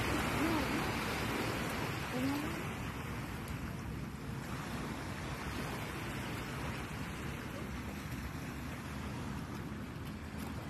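Steady rushing noise of the open air, a little louder over the first few seconds, with a few faint, brief voice sounds near the start.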